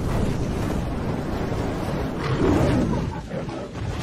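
A lion roar sound effect over a deep fiery rumble, swelling about two seconds in and easing off near the end.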